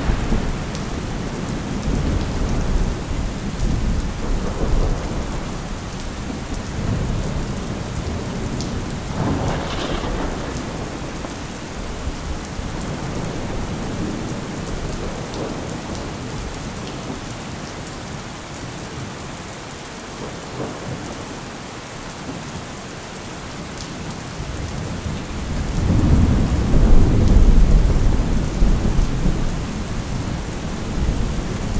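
Steady rain with thunder rumbling: a low rumble dying away over the first few seconds, a short sharper peal about ten seconds in, and a long, loud roll of thunder swelling up near the end.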